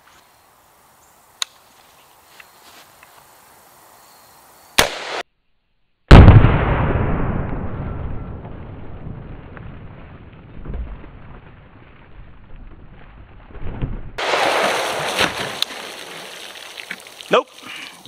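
A rifle shot from an AR-15 in .223, very sudden and the loudest sound, about six seconds in, followed by a long rumble that fades over several seconds. The round goes through the Level II ballistic book bag into the water jug behind it. A brief sharp report comes just before, at about five seconds.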